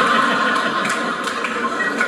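Comedy club audience laughing after a punchline, a dense steady wash of many people laughing that fades out as the comedian resumes near the end.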